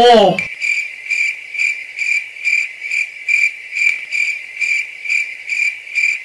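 Crickets chirping in an even rhythm, about two chirps a second, starting abruptly about half a second in: a night-time ambience sound effect.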